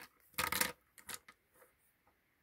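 Plastic Crayola Super Tips markers being laid down on a wooden table, clicking and rattling against one another: a clatter about half a second in, then a few lighter clicks.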